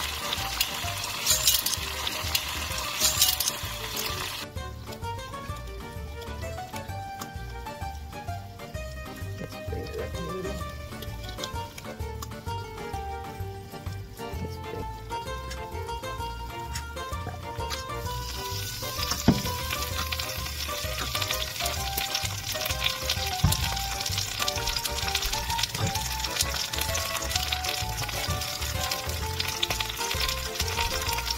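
Seitan roast sizzling as it fries slowly in a pan of oil and maple glaze, over background music. The sizzle drops away after about four seconds, leaving only the music, and comes back about eighteen seconds in, with a couple of knocks.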